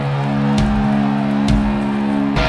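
Live garage rock band: a held electric guitar chord rings over a drum and cymbal hit that lands about once a second.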